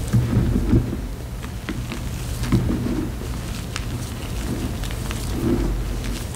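Gloved hands squeezing and crumbling powdery turquoise-dyed gym chalk mixed with plain gym chalk: soft crunches in three bursts, near the start, around the middle, and near the end, with small crackles between. A steady low rumble runs underneath.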